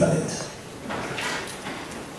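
A man's lecturing voice, picked up by a microphone, trails off into a short pause. A faint short noise follows about a second in.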